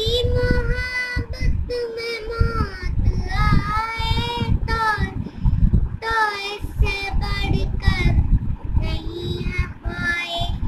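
A young boy singing a slow melody in long, wavering held notes, over a low rumble.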